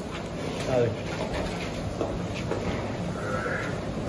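A man's short call of 'aa' to a buffalo about a second in, over the steady background noise of a buffalo shed, with faint animal sounds.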